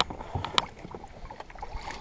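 Water splashing as a hooked wiper (hybrid striped bass) thrashes at the surface beside the boat and is netted: a few short, sharp splashes and knocks, the sharpest a little past half a second in.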